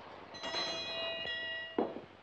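A bell rings with a steady, clear tone for about a second and a half, signalling recess, then stops, followed by a short knock.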